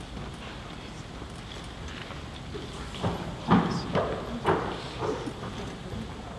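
Footsteps on a hard floor, about two steps a second, starting about three seconds in, over a quiet hall with faint voices.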